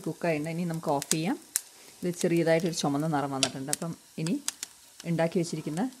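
A woman talking, with faint, sparse crackles behind her voice from a pan of fried tempering sizzling on the stove.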